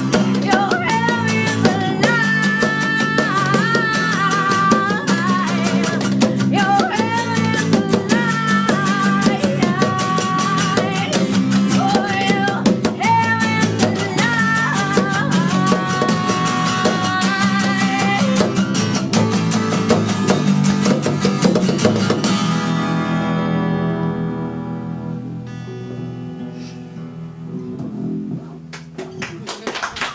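Live acoustic performance: a woman singing over a strummed acoustic guitar and a bass guitar. About two-thirds through, the song ends, with the final chord ringing out and fading.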